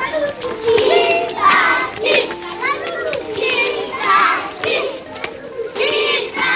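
A crowd of young children's voices calling and chattering together, high-pitched and overlapping.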